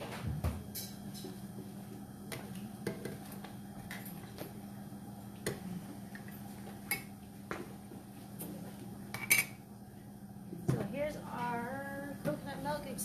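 Scattered clinks and knocks of kitchen utensils and containers being handled on a counter, the sharpest about nine seconds in, over a steady low hum. A voice starts near the end.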